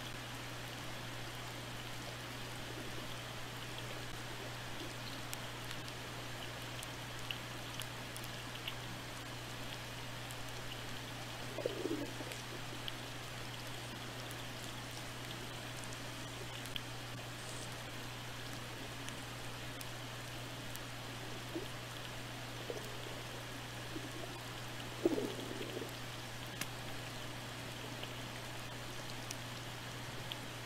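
Underwater microphone sound: a steady hiss with faint scattered clicks and crackle over a steady low hum. A few short, faint low glides stand out, once about halfway through and again near the end.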